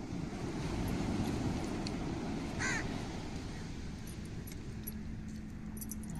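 A crow cawing once, about halfway through, over a steady low outdoor rumble.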